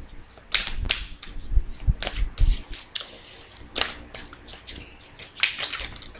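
A deck of oracle cards being shuffled by hand: irregular crisp flicks and snaps of the cards.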